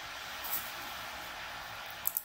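A steady hiss lasting about two seconds, then stopping.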